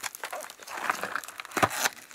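Clear plastic wrapper crinkling as it is peeled off a small cardboard candy box and the box's flaps are pulled open: an irregular run of small crackles, with a sharper one about one and a half seconds in.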